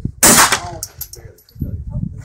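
A single gunshot about a quarter second in, sharp and loud, with a brief ringing tail.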